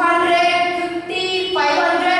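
A high-pitched voice in a sing-song chant, holding long steady notes and stepping up in pitch about a second in.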